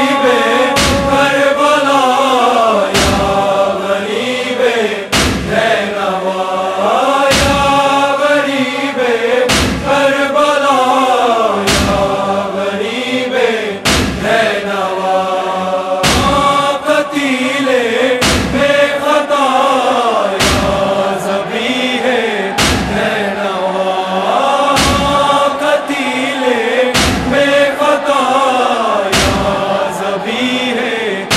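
Nauha lament: voices chant a slow, mournful Urdu refrain over a steady beat of thuds. The strong thuds fall about every two seconds, with lighter ones between.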